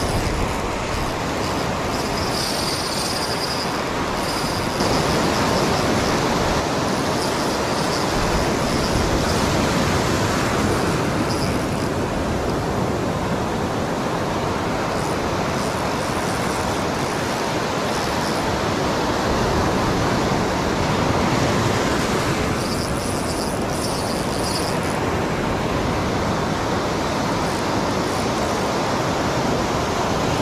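Ocean surf breaking and washing up a sandy beach: a loud, steady rush of waves and foam. A thin high-pitched sound comes in briefly twice, near the start and about three-quarters of the way through.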